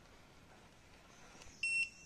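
Handheld rebar scanner giving one short high-pitched electronic beep near the end, the signal that it has located a rebar beneath the concrete cover.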